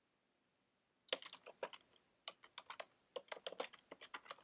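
Typing on a computer keyboard: a quick, irregular run of faint key clicks that starts about a second in.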